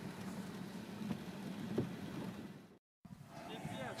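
Faint, steady, muffled road and water noise inside a car's cabin as it drives through deep floodwater, with a low engine hum under it. It cuts off abruptly about three seconds in.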